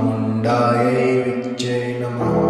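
A voice chanting a Kali mantra over a steady low drone, with brief breaks between syllables about half a second and a second and a half in.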